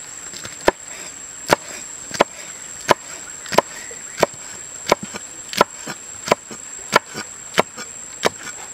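Large kitchen knife slicing a green chili on a wooden chopping block, each stroke ending in a sharp knock of the blade on the wood. The chops come at a steady, even pace, about one every 0.7 seconds, some eleven in all.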